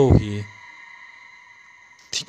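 A voice speaking briefly at the start, then a steady high whine of several held tones at a lower level under the pause.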